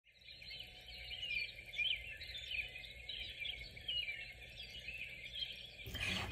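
Birds chirping, many short overlapping calls at a fairly low level, cutting off suddenly near the end.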